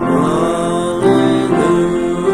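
A hymn sung with keyboard accompaniment, the notes held steadily; a new phrase starts right at the beginning after a brief dip, and the chord changes about a second in.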